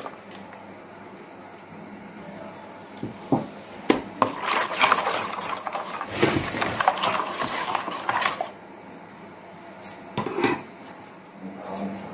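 Metal spoon stirring a wet dough batter in a stainless-steel mixing bowl, scraping and clinking against the steel. A couple of single clinks come first, then a few seconds of steady stirring in the middle, then a few more clinks near the end.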